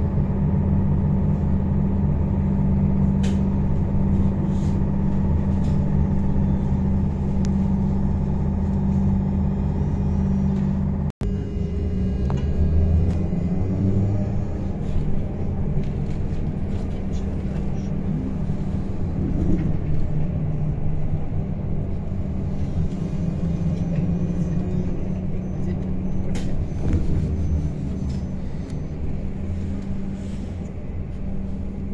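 Cabin sound of a MAZ-103T trolleybus on the move: a steady electrical hum from the traction drive over road and tyre noise. The sound breaks off for an instant about eleven seconds in, then runs on with the hum shifting in pitch.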